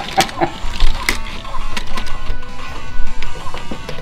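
Plastic Lego pieces clattering and knocking in a rapid, irregular run of sharp clicks as a Lego set is knocked apart, with music playing underneath.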